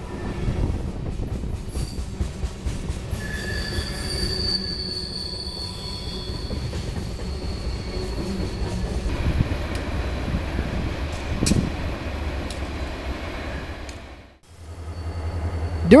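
Freight cars rolling past close by, their wheels rumbling on the rails, with a thin high-pitched wheel squeal from about three seconds in that lasts several seconds. The sound cuts off shortly before the end, and a steady low rumble follows.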